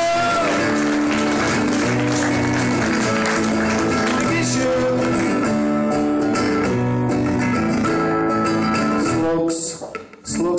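Acoustic guitar strummed in a steady rhythm of chords, played through a PA, stopping abruptly just before the end.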